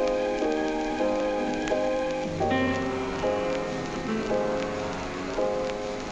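Background instrumental music: held notes and chords changing every half second or so, with a low bass coming in about two seconds in, over a steady crackling hiss like rain.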